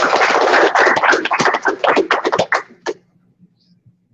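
A small audience applauding, many hands clapping together, dying away and stopping about three seconds in.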